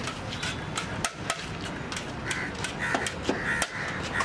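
Roadside street ambience: a steady low background with a run of sharp clicks and clinks, and several short harsh cries in the second half.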